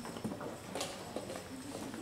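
A few sharp, separate knocks of wooden chess pieces being set down on boards and chess clock buttons being pressed during blitz games, the clearest a little under a second in.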